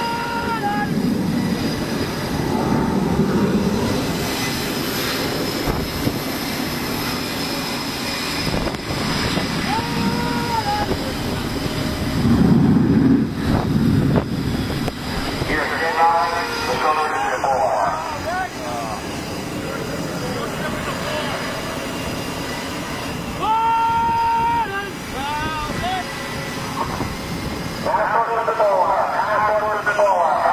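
Steady rumble of wind and aircraft engine noise on a carrier flight deck, swelling about halfway through. Short bursts of indistinct voices come and go over it.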